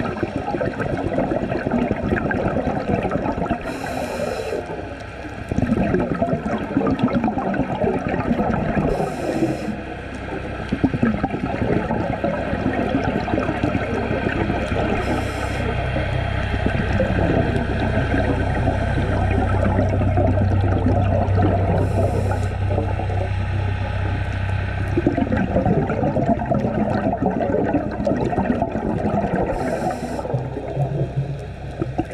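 Scuba diver breathing through an open-circuit regulator underwater: a short hiss with each inhalation, about every six to seven seconds, each followed by the rumbling gurgle of exhaled bubbles. A low steady drone builds from about nine seconds in and is strongest in the middle before easing off.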